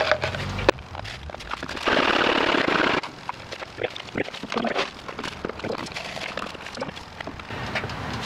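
Cast lead 9 mm bullets being handled for shake-and-bake powder coating: a loud rattle lasting about a second, some two seconds in, then scattered light clicks and taps.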